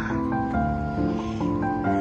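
Background music: a melody of held notes that change pitch every quarter to half second, at an even loudness.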